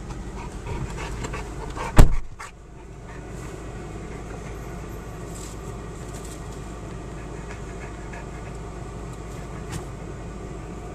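Saint Bernard panting steadily over a low hum inside a car. A single loud thump comes about two seconds in.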